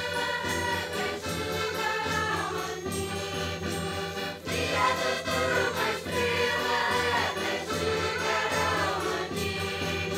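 A children's and youth choir sings a traditional Portuguese Reis (Epiphany) carol, accompanied by accordions and other folk instruments, with a short break between sung phrases about four seconds in.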